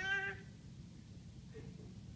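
A man's voice trailing off in a drawn-out, wavering hesitation sound, then a pause of faint room tone in a large room.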